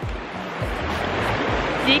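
Rushing river water, a steady hiss of a shallow river running over rocks.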